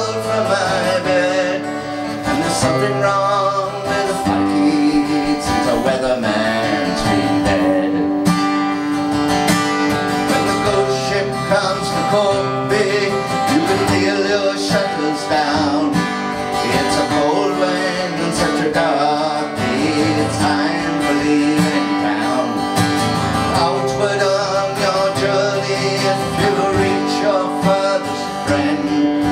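Live acoustic folk song: an acoustic guitar strummed steadily with a man singing along.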